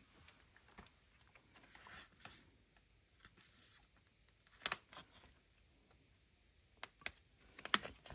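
Pages and plastic pocket sleeves of a ring-binder planner being turned and handled: faint rustling, then a few sharp little clicks and taps in the second half.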